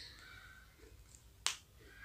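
A single sharp click about one and a half seconds in, over faint room tone.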